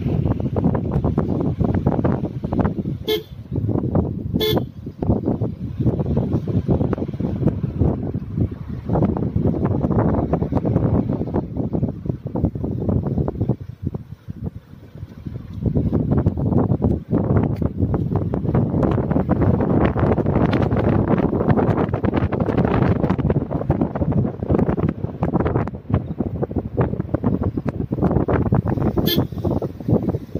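Steady noise of a vehicle driving down a winding hill road, engine and road noise heard from on board, with two short horn toots a second or so apart a few seconds in. The noise drops off briefly about halfway through.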